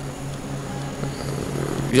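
A steady low hum with a rumbling background noise that swells through the second half, of the kind a passing vehicle makes. A man's voice starts right at the end.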